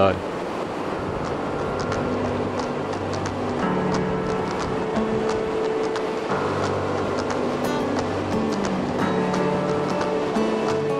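Background music with held notes changing every second or two, over the steady rush of river water spilling over a concrete causeway.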